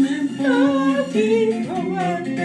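Gospel praise song sung in the Bassa language: a woman's singing voice holding and bending long notes over instrumental backing.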